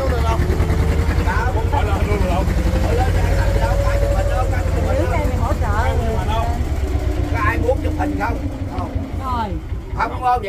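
Small wooden tour boat's engine running with a steady low rumble, dropping in pitch and level near the end as the boat slows to come alongside the jetty.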